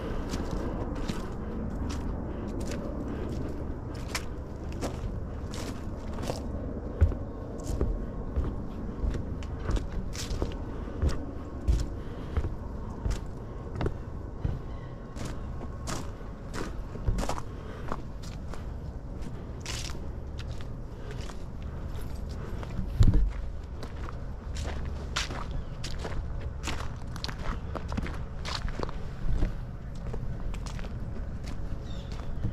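Footsteps of a person walking along a trail, about two steps a second, over a low rumble. There are a few louder thumps, the biggest about 23 seconds in.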